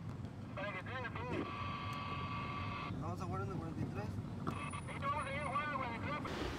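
Glitch transition sound effect: garbled, high-pitched, sped-up voice chatter over static hiss, with a held electronic tone in the middle.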